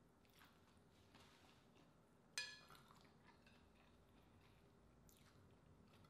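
Faint chewing and mouth sounds of a person eating green-lip mussel and rice, with a single short ringing clink a little over two seconds in.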